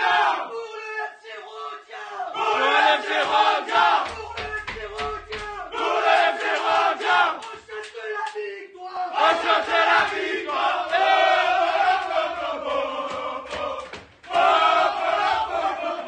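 A group of men chanting and shouting together in loud bursts with short breaks between them, with hand claps in a small tiled changing room.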